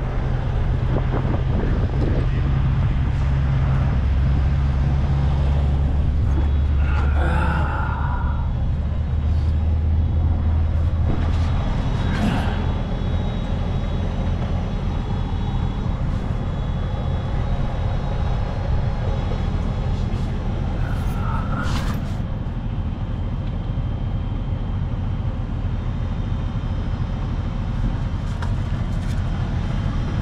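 Heavy diesel truck engine idling steadily, a low hum that eases a little about twelve seconds in, as the air brake and air-suspension system is pumped back up to pressure. A couple of short sharp knocks come through near the middle.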